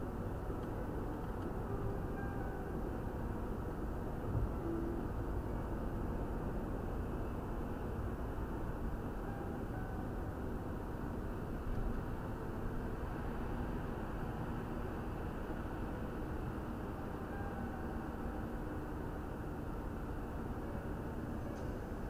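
Steady road and engine noise inside a moving Mercedes-Benz car at motorway speed, heard through a dashcam's microphone in the cabin, with a couple of faint knocks.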